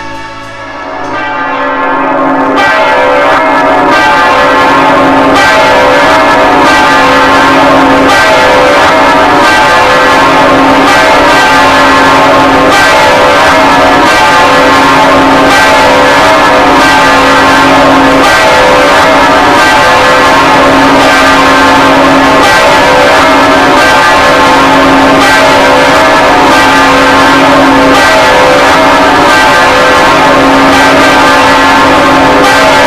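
A peal of church bells ringing, many bells striking in quick overlapping succession, coming up to full level within the first three seconds.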